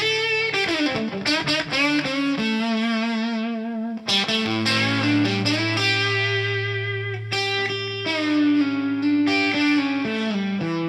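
Electric guitar played through an Origin Effects RevivalTREM bias tremolo pedal with its drive cranked fully, giving an overdriven tone: a lead line of quick picked notes and bends, then long held notes with wide vibrato.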